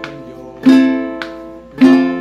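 Ukulele strummed slowly in half notes: two full chord strums, about 0.7 and 1.8 seconds in, each left to ring and fade, with a light extra stroke between them.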